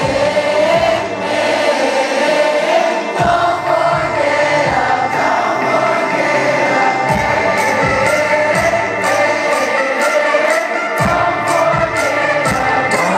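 A concert crowd singing a repeated part together in unison over the band's live music, with low drum beats throughout and cymbal ticks joining in past the middle.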